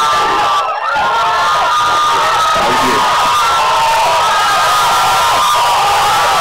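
A large audience cheering and shouting, with many overlapping high-pitched voices. It keeps up steadily and loudly, with only a brief dip just under a second in.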